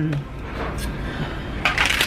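A plastic shaker bottle being picked up and handled. Its whisk ball rattles and clinks inside in a loud clatter that starts near the end.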